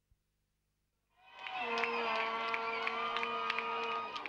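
Crowd cheering and shouting in celebration, with claps and a long held yell through it, fading in about a second in.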